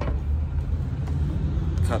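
Low, steady rumble of road traffic, with a brief click at the start.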